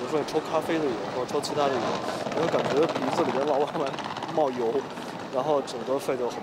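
Speech only: a man talking in Mandarin Chinese.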